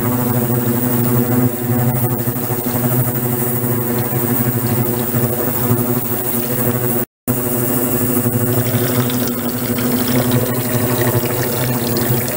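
Ultrasonic cleaning tank running with water flowing through it: a steady low hum over the rush of churning water. The sound cuts out briefly about seven seconds in.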